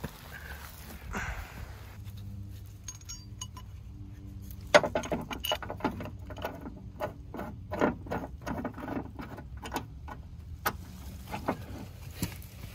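Steel bow shackle clinking and rattling against the car's front tow loop as it is fitted by hand. Irregular metallic clicks start about five seconds in and end with a sharp click.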